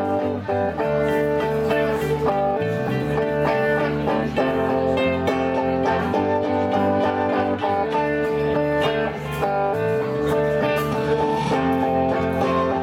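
A live acoustic-electric band plays an instrumental passage: strummed acoustic and electric guitars with a flute carrying held melody notes over them.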